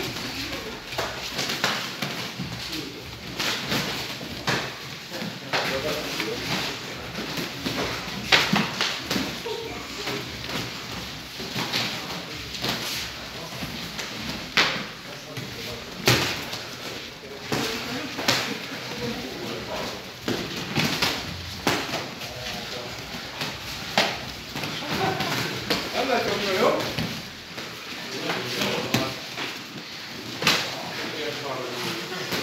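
Padded boxing gloves and kicks smacking against focus mitts: sharp, irregular impacts, some a few seconds apart, some in quick pairs, over a steady hubbub of voices.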